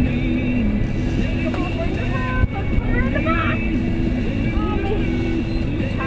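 Twin outboard motors running steadily at trolling speed, a constant low rumble mixed with wind and water noise. Music and voices run underneath.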